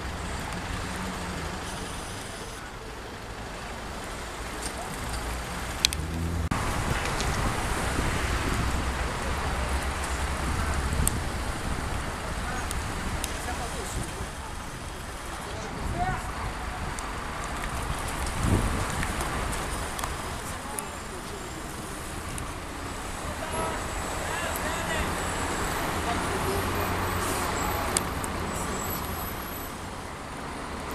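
Outdoor road traffic: a steady wash of cars passing, with indistinct voices in the background.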